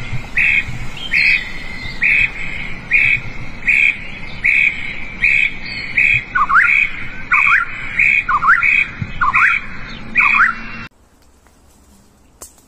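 Loud squawking calls repeating evenly, about one every 0.8 s. About halfway through, a second call joins that swoops up in pitch each time. Both start and cut off abruptly a second before the end.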